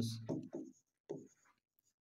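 Pen writing on a digital writing board: a few faint, short scratching strokes as a word is written, just after a spoken word trails off.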